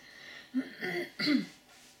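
A woman clearing her throat, a short rough burst about a second in.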